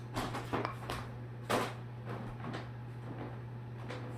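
Several short clicks and knocks, the loudest about one and a half seconds in, over a steady low hum.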